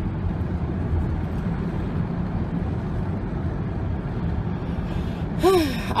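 Steady low road and engine rumble heard inside the cab of an old truck on the move. A short sigh comes near the end.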